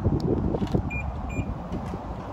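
Two short high beeps about a third of a second apart from a 2004 Rolls-Royce Phantom answering a press of its key fob, heard over wind noise on the microphone.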